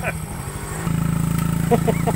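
Small motor scooter engine running at idle, then about a second in a louder, steadier motorbike engine takes over, with a few short spoken sounds near the end.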